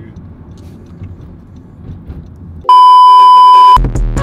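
Low road noise inside a moving car's cabin, cut off about two and a half seconds in by a loud, steady electronic bleep tone about a second long, of the kind used to censor words. Music starts just after the bleep ends, near the end.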